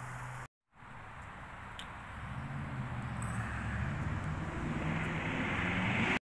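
A distant engine drone that grows gradually louder over several seconds, after a brief cut to silence about half a second in.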